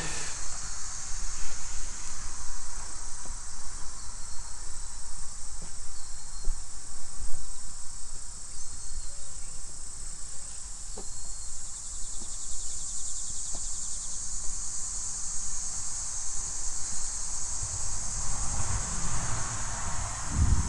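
Insects chirring in a steady, high-pitched drone. A finer pulsing trill joins in briefly about twelve seconds in.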